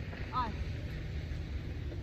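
A single short spoken syllable about half a second in, over a steady low outdoor rumble.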